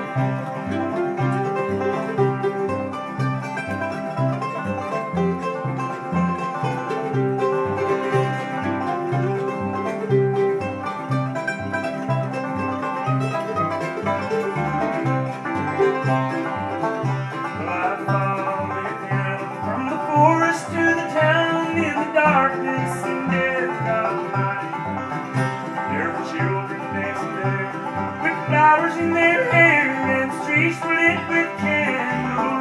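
Live acoustic bluegrass band playing an instrumental passage: five-string banjo, flat-top acoustic guitar and fiddle over an upright bass keeping a steady beat.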